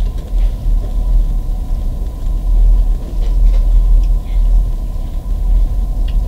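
Steady low rumble of background room noise with a faint, thin steady whine above it.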